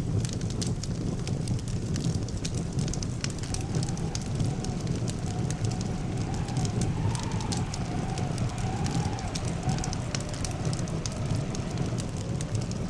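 Wooden funeral pyre burning: a steady low rush of flames with constant crackling and popping. A faint wavering tone joins in about three and a half seconds in and fades near the end.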